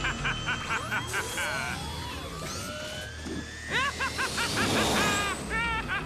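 Cartoon motorbike sound effect: the engine kicks in suddenly and its whine rises steadily for about three seconds as the bike speeds off, over fast action music with short repeated stabs.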